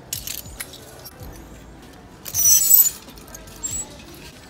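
Clothes hangers sliding and clinking along a metal clothing rack as garments are pushed aside, with one loud scraping rush a little over halfway through. Background music plays underneath.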